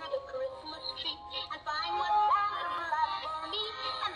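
Animated singing plush teddy bear playing its recorded Christmas song, a synthetic-sounding voice singing a bouncy tune over music, from the toy's built-in speaker.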